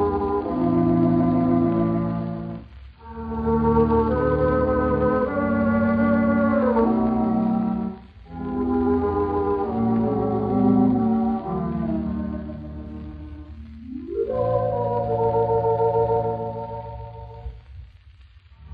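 Wurlitzer theatre pipe organ playing slow, sustained chords with a wavering tremulant, from a 1927 78 rpm record with a muffled top. The phrases break off briefly about every five seconds, and a rising slide leads into the last phrase.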